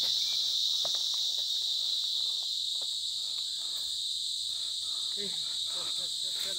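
A dense chorus of insects buzzing steadily and high-pitched, with a few faint ticks underneath.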